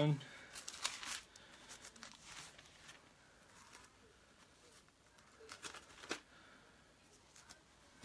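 Paper pages of a printed Bible being turned by hand: faint, irregular rustling with scattered soft flicks, a cluster about a second in and another past the middle, as the pages are leafed through to find a passage.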